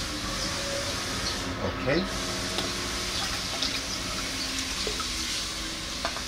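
Liquid seaweed extract being poured from a small bottle into a bucket of water mixed with pesticide, a thin stream running into the water.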